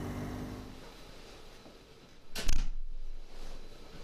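BMW R1200GS Adventure's boxer-twin engine running under way with wind noise, fading out within the first second. About two and a half seconds in, a single loud knock in a small room.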